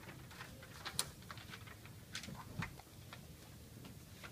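Handling noises: a few sharp clicks and taps with light rustling, the loudest about a second in.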